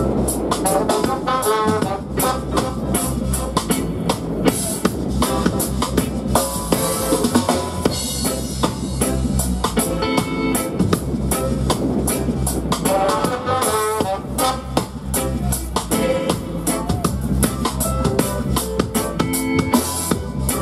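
Live reggae dub band playing: a drum kit with rimshots and a deep, steady bass groove under electric guitar and keyboard, with saxophone and trombone phrases at several points.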